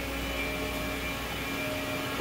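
Steady hum of machine-shop machinery running: an even noise with a few constant tones held through it.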